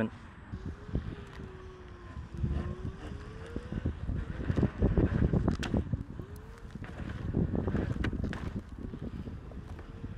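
Inmotion V11Y electric unicycle riding over concrete, its hub motor giving a thin whine that rises and falls in pitch with the wheel's speed, over rolling and wind noise on the microphone.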